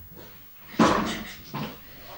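A woman breathing out in two heavy sighs, the first louder, the second about a second later.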